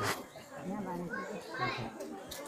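Children's voices chattering and calling out, with a short sharp noise right at the start.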